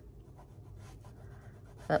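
Fine-tip ink pen scratching faintly across sketchbook paper as it draws lines.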